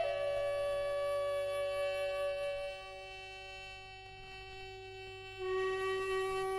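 Instrumental medieval-style French folk music: a wind instrument holds long sustained notes over a steady drone. The music drops quieter about three seconds in, and a louder new held note enters shortly before the end.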